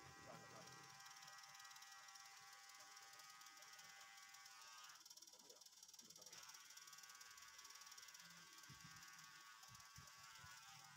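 Electric hair trimmer running with a faint, steady motor buzz as it trims hair, its tone changing briefly about halfway through.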